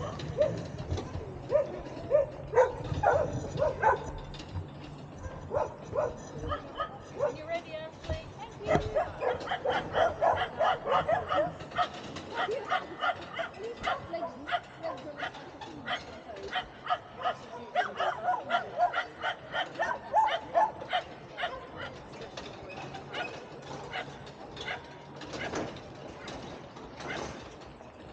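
A dog barking over and over in quick short barks, several a second, in runs that are densest through the middle stretch and thin out near the end.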